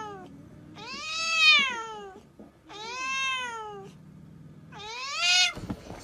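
A tabby cat's long, drawn-out meows at another cat in a hostile standoff: about four calls, each rising and then falling in pitch, with short gaps between them.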